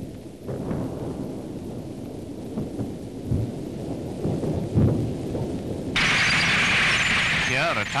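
Dubbed newsreel battle sound effects for tanks on a road: a low rumble with a couple of heavier thuds. About six seconds in it switches suddenly to a loud, steady hiss.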